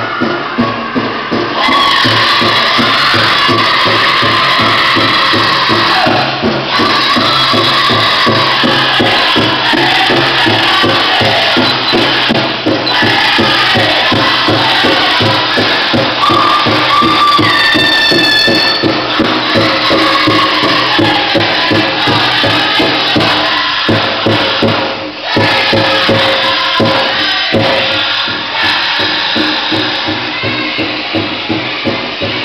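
Powwow drum group singing over a steady, even drumbeat, with the metal cones of jingle dresses shaking in time as the women dance.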